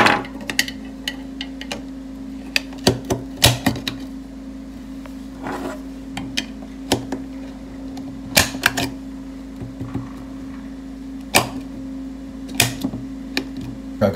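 Big-bore .50 Krater cartridges being pressed one at a time into a double-stack AR-10 magazine: sharp metallic clicks and short scrapes of brass cases against the magazine lips, spaced a second or more apart, as the magazine is filled to eight rounds. A steady low hum runs underneath.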